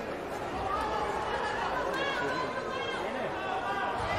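Indistinct chatter of several people talking at once, with no clear words, at a steady level.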